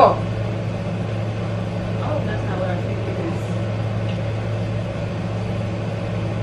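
A steady low hum runs throughout, with a few faint words about two seconds in.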